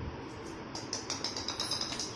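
Beagle puppies' claws clicking on a hard stone floor as they run: a quick run of light clicks starting a little under a second in, over a steady background hiss.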